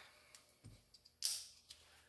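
Small handling noises of a plastic two-part epoxy syringe at a wooden workbench: a few faint clicks, and a brief scraping rustle a little over a second in.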